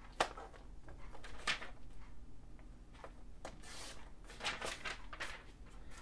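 Paper rustling as a sheet is handled and slid on a plastic sliding paper trimmer, with several short scraping strokes of the trimmer's blade carriage run along its rail to cut the sheet.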